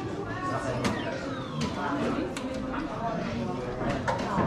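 Babble of many voices talking at once in a large hall, with a few sharp clicks and knocks among it.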